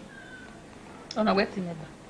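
A short vocal call about a second in, in two parts, the second falling in pitch.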